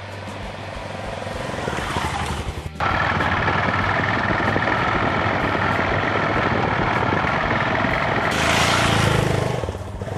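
Dual-purpose motorcycle riding along a dirt lane: first approaching and growing louder, then after a sudden cut a steady run of engine, tyre and wind noise close to the bike, and near the end a louder surge as the bike goes close by, dropping away just before the end.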